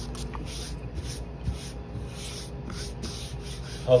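Rustling and rubbing of items being handled, in short uneven patches, over a steady low hum.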